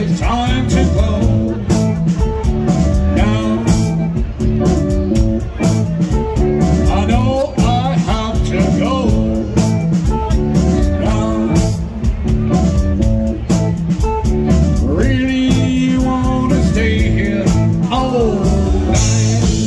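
Live rock band playing: electric organ, electric guitar and drum kit keeping a steady beat, with a lead singer at the microphone.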